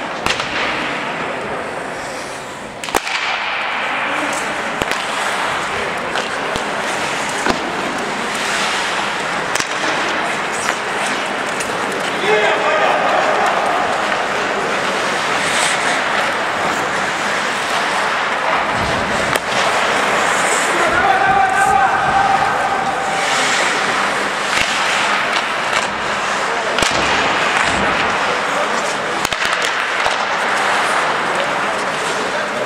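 Ice hockey in play: skates scraping the ice and sticks and puck clacking, with players calling out a couple of times.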